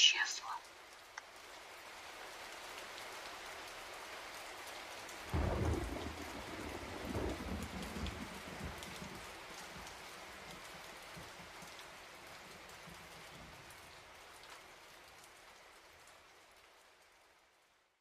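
Steady rain falling, with a roll of thunder about five seconds in that rumbles on for a few seconds before dying away. The rain fades out near the end.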